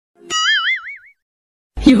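Cartoon 'boing' sound effect: one wobbling, quavering tone lasting under a second. It is followed by a short silence, then music with a voice starts near the end.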